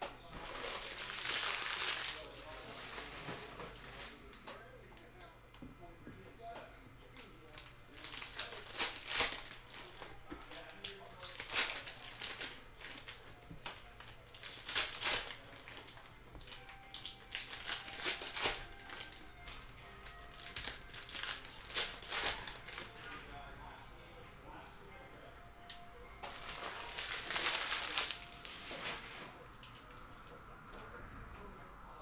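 Foil trading-card packs being crinkled and torn open by hand, in about seven separate bursts of a second or two each, with quieter card handling between.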